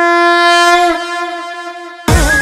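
Conch shell (shankh) blown in one long steady note that wavers and breaks off about a second in, then dies away in reverberation.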